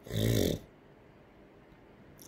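A man's short, rough, breathy vocal noise at the start, about half a second long.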